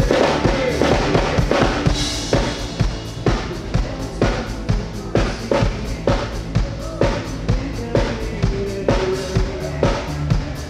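Electronic pop band playing live, with a drum kit keeping a steady beat of about two strokes a second.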